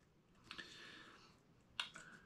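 Near silence with two faint clicks, about half a second in and near the end, and a faint soft rustle between them: the grunt call's ribbed plastic extension tube being handled.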